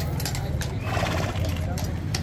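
Household Cavalry horse standing at its sentry post: clicks of hooves on the stone and a short noisy burst about a second in. People talk around it over a steady low rumble.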